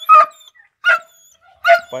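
A chained tan-and-white hunting dog barking three times, about a second apart: loud, sharp barks.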